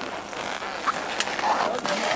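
Indistinct voices of people standing on the slope, faint over a steady outdoor hiss.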